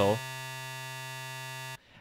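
Native Instruments Massive software synthesizer holding one steady note on its 'Dirty Needle' wavetable: a tone with many harmonics stacked high up. It cuts off suddenly near the end.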